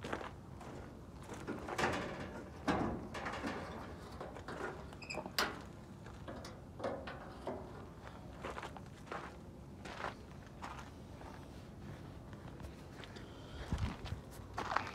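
Scattered clicks, knocks and scuffs at irregular times as a Chevy G20 van's hood latch and hood are worked to pop the hood open.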